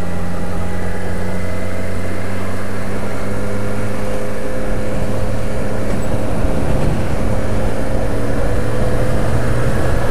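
Motorcycle engine running at a steady cruise, heard with wind and road noise from a helmet-mounted camera. Its pitch holds nearly level, easing slightly and picking up again near the end.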